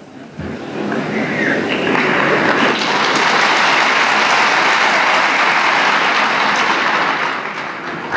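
Large audience applauding: dense clapping that swells over the first two seconds, holds steady, and fades near the end.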